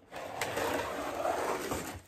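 A glittered artificial tree being slid out of its cardboard box: a steady rustling scrape of branches against cardboard, with a small click about half a second in.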